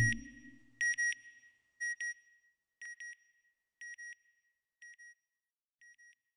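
Electronic sound-effect beeps in pairs, two short high tones about once a second, each pair fainter than the last. A low whoosh fades out at the very start.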